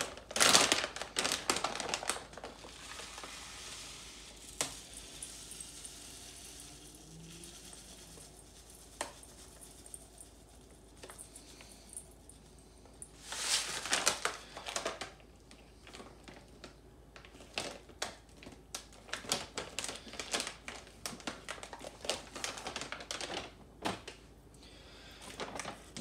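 A plastic pouch of flaxseed handled and crinkling loudly, with a few seconds of soft steady hiss as the seeds pour into a stainless steel bowl on a kitchen scale. More crinkling comes about halfway through, then a stretch of rapid small clicks and crackles from the bag near the end.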